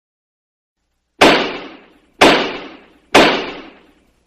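Three identical sharp hits about a second apart, each dying away over well under a second.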